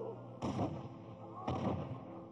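A man shouting twice, about a second apart, over a steady film music score.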